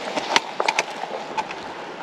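Footsteps on gravelly ground: a handful of short, light clicks and scuffs over a steady hiss.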